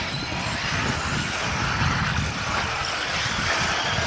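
Four-wheel-drive RC buggies racing on a dirt track: a steady, even wash of distant motor whine and track noise with a low rumble underneath.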